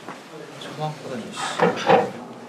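A man's short wordless vocal sounds: a brief utterance just before a second in, then louder ones near the end, from a student being asked moments later if he is okay.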